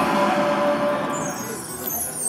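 Dancing Drums slot machine's Mini Jackpot win music dying away, with a falling whoosh in the second half as the award screen clears.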